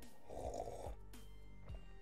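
A short sip and swallow from a mug, faint, about half a second long, over quiet background music.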